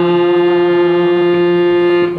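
Harmonium reeds sounding one melody note held steady, with a lower tone beneath it.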